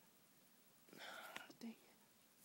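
A man whispering a word or two, faint and short, about a second in, with a small click in the middle of it; otherwise near silence.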